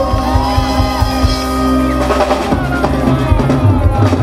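A live band playing, with a drum kit's bass drum and cymbals keeping a steady beat under held instrumental tones.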